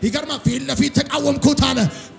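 A man's voice through a microphone and PA, preaching in Amharic in fast, emphatic, rhythmic bursts without a pause.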